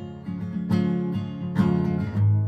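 Acoustic guitar strumming chords, with two strong strokes about a second apart, between sung lines.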